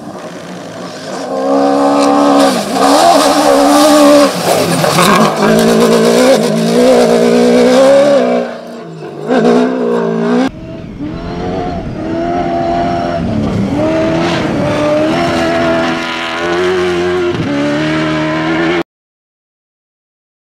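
Toyota Hilux rally-raid car's engine revving hard at speed on a dirt track, revs rising and falling with gear changes. About ten seconds in it cuts to a second, steadier stretch of high-revving running, which stops abruptly near the end.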